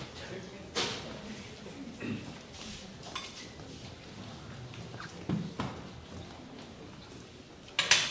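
Scattered knocks and clinks of musicians handling instruments and gear on stage between pieces, with faint voices. There is a louder clatter just before the end.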